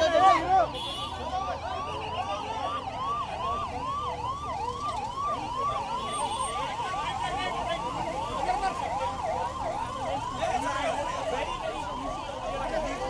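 Emergency-vehicle siren on a fast yelp, its pitch sweeping up and down about two to three times a second without a break.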